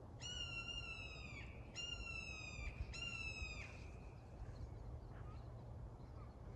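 Three calls from a bird the hikers take for a hawk of some sort. Each call is clear and drawn out, about a second long, with short gaps between, and drops slightly in pitch at its end.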